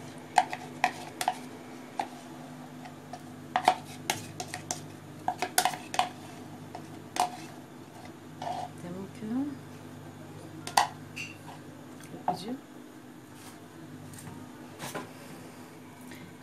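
A metal spoon scraping and clinking against a plastic cup and a ceramic plate while spooning out thick chocolate sauce, giving irregular sharp clicks and taps over a steady low hum.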